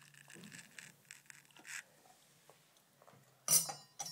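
Faint small handling noises, then about three and a half seconds in a sudden loud metallic clink with a brief ring from a small metal goblet being knocked.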